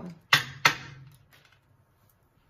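Two sharp clicks about a third of a second apart from tarot cards and a plastic deck box being handled on a tabletop, each with a short dull ring after it.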